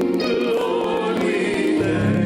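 Gospel choir singing, a steady run of sustained sung notes with no break.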